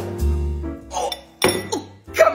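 Metal fork clinking against a glass bowl, once at the start and again about a second and a half in, over background music with sustained notes.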